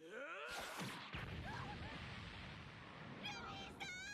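Anime episode soundtrack playing quietly: a steady noisy wash of sound effects, with a character's high shout of "Luffy-san!" near the end.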